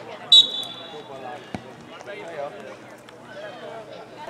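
Referee's whistle: one short, shrill blast about a third of a second in, signalling a restart, followed about a second later by a single thud of the ball being kicked. Distant players' and spectators' voices carry on underneath.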